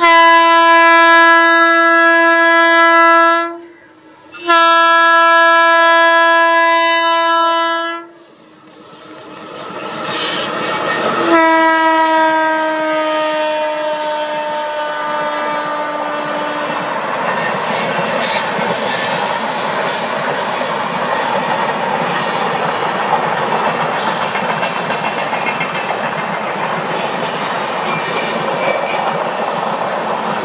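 Indian Railways passenger train: the locomotive horn sounds two long blasts, then a third blast about eleven seconds in that slowly drops in pitch as the locomotive passes. The steady rumble and clickety-clack of the LHB coaches rolling by on the curve follows.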